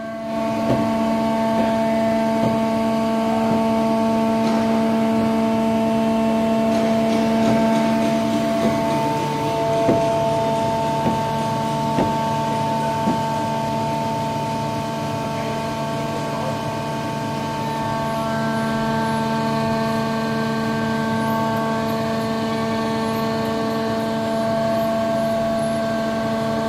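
Aircraft ground support equipment powering the jacked-up jet's systems during function checks, a steady machine hum of several fixed tones. Its lowest tone drops about nine seconds in and comes back up near eighteen seconds, with a few faint clicks in between.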